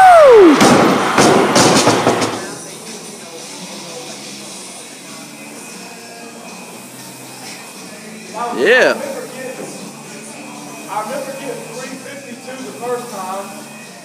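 A man's loud yell as the lift is finished, then a loaded barbell with bumper plates dropped to the floor, crashing and rattling for about two seconds. Later comes a brief shout near the nine-second mark and faint voices.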